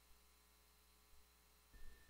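Near silence: a faint steady line hum, with a brief faint sound just before the end.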